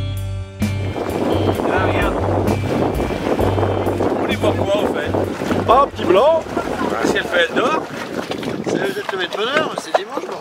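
Motor cruiser running on the lake, with a steady wash of wind and water and a low rumble that fades away before the end. Background music cuts out about half a second in, and people's voices break in over the last few seconds.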